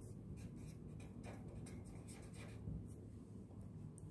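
Pen writing on paper: a run of faint, short scratching strokes as a word is written out by hand.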